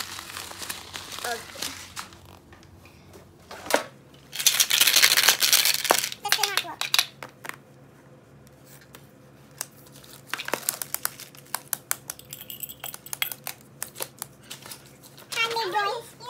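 A clear plastic bag crinkling and rustling as it is handled, loudest in a burst about four to six seconds in, with scattered light taps and clicks of small objects being moved about.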